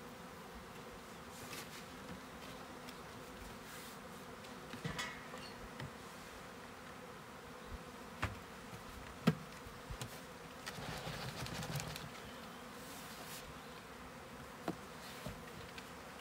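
Swarm of honeybees buzzing steadily as they are shaken out of a cardboard box into a hive. A few light knocks from the box are heard, the sharpest one a little past halfway.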